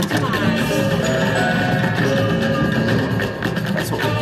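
Kilimanjaro slot machine's bonus-round music: a steady, percussive tune with wood-block and marimba-like tones, played while the free-spin reels spin and stop.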